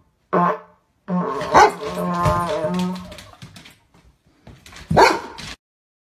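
Golden retriever barking: a short bark, then a longer, wavering drawn-out call, then another loud bark about five seconds in.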